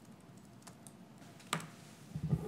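Faint keyboard clicks over quiet room tone, with one sharper click about one and a half seconds in.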